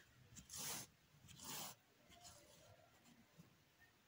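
Faint rubbing of yarn and hands on a crocheted panel during hand-sewing, with two soft swishes about a second apart.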